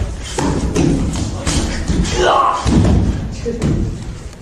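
Repeated thuds of feet and bodies on a dojo mat as students rush in and are thrown, mixed with voices, one rising clearly about two seconds in; the old recording carries a heavy low rumble.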